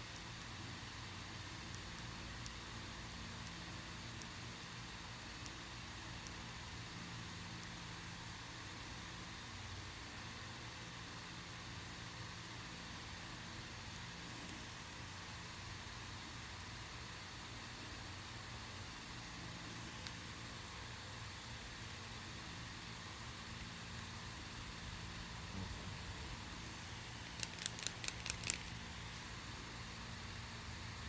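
Steady faint hiss and low hum of room tone, with a few faint ticks and, near the end, a quick run of about six sharp clicks.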